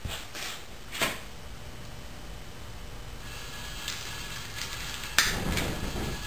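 A lighter wand clicks about a second in over a steady hiss. Just after five seconds the propane jets along the Rubens tube catch with a sudden rush of noise, and the flames burn on.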